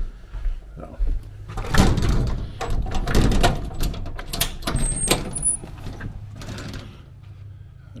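Storm door opened with a run of knocks and clicks, and footsteps out onto a wooden deck, over the steady low hum of a lawn mower running in the distance.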